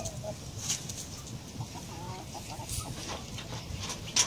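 Chickens clucking in short, scattered calls, with a few brief rustles.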